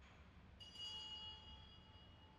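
A small bell struck once, its high ring fading away slowly, over faint church room tone with a low hum.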